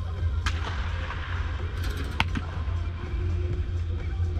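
Two sharp cracks of baseballs being hit with a bat in batting practice, about a second and a half apart, the second the louder. A steady low hum and music run underneath.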